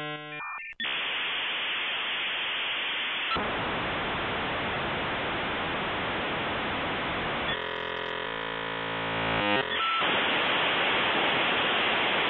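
Dial-up modem connecting over a telephone line: quick stepped tones in the first second, then long hissing static. A buzzing stretch of many layered steady tones comes about two-thirds of the way through, then the hiss returns.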